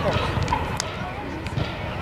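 Football-pitch ambience: faint voices over a low, uneven rumble, with one sharp click a little under a second in.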